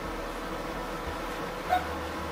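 Steady low hum and hiss of background room tone with faint steady tones, no distinct event.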